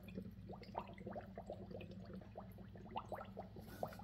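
Water draining out of a homemade aluminum-bowl sink's plastic drain tailpiece into a kitchen sink below, falling as a quick, irregular run of small drops. Each drop is a short plink that rises in pitch. It is faint.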